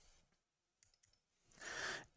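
Near silence with a few faint clicks in the first second, then a breath drawn in near the end.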